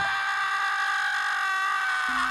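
A wake-up alarm going off: one long, loud high note held at a steady pitch.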